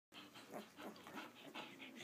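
Faint, busy chorus of short calls from 11-day-old Samoyed puppies, several a second and overlapping.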